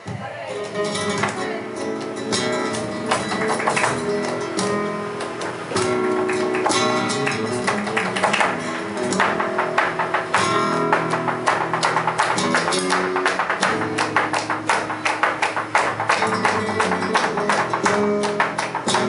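Live flamenco: an acoustic guitar playing, with sharp percussive clicks of the dancer's footwork and palmas (rhythmic hand-clapping) over it. The clicks grow denser in the second half.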